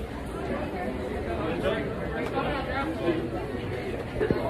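Indistinct chatter of voices in a large indoor space, over a steady low rumble.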